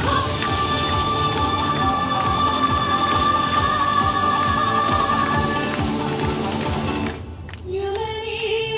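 Recorded yosakoi dance music with a long held note through most of the stretch; it breaks off briefly near the end, then starts again with a sung phrase.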